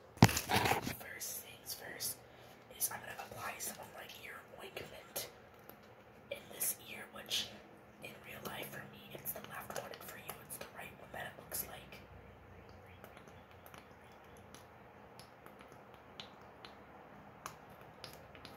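A person whispering, breathy and hoarse, mixed with short clicks and rustles of something being handled close to the microphone; it quietens for the last few seconds.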